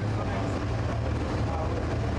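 A car driving through a road tunnel: a steady low engine and tyre rumble.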